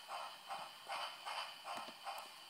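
Steam-locomotive chuffing from the onboard DCC sound decoder's small speaker in a Hornby OO gauge Devon Belle model, a steady beat of about two and a half hissy chuffs a second as the engine runs slowly.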